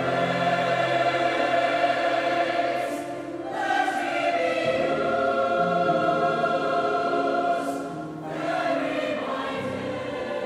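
Mixed choir singing sustained chords with piano accompaniment, in long phrases with brief breaks about three and eight seconds in.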